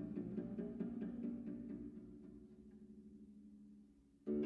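Bass zither playing a quick run of repeated low notes over ringing low strings, dying away over the second half to almost nothing.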